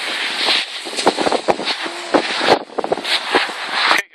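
Skis scraping and sliding over hard, tracked snow, with rough, uneven noise and many small scrapes, mixed with wind rushing over the phone's microphone as the skier moves downhill.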